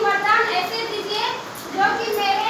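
Indistinct chatter of high-pitched voices talking over one another, with a short lull a little past the middle before a voice picks up again.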